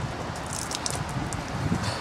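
A rain-soaked cycling glove being wrung out by hand, with water spattering and the fabric rustling in short crackly bursts.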